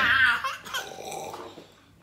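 A child laughing, the laughter trailing off in the first second and fading to quiet near the end.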